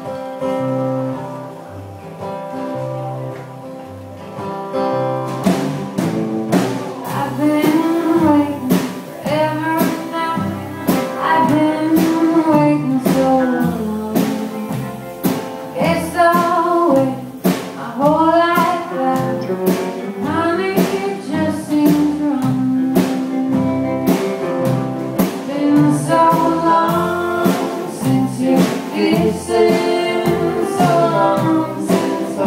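Live small blues band with acoustic guitar, electric guitar, upright bass and drums. The instruments play alone for about five seconds, then the drums come in and a woman's lead singing begins.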